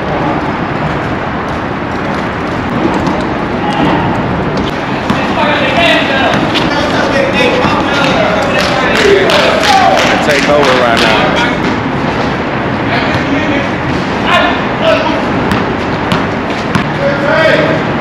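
People talking and calling out over a steady background noise, with sharp knocks of basketballs bouncing on the court, most of them in the middle of the stretch.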